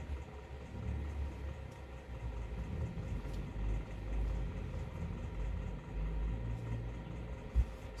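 A low, steady background rumble with small swells in level, and a short thump near the end.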